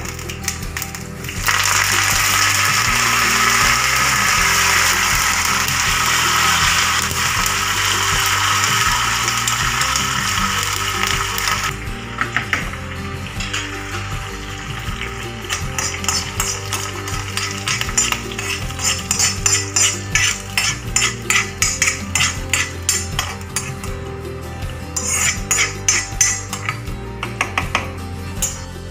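Hot oil sizzling loudly in a pan as curry leaves are dropped into a tempering of red chillies. The sizzle cuts off suddenly, followed by repeated clicks and clinks of a spoon against a pot. Background music runs underneath.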